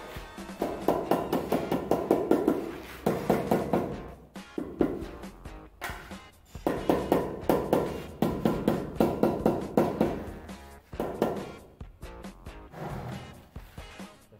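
Rubber mallet tapping a stone window sill to bed it into the adhesive: runs of rapid light knocks, several a second, with short pauses between runs, over background music.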